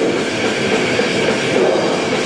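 A metal band playing live: heavily distorted electric guitars through Marshall stacks with bass and drums, in a dense, saturated wall of sound.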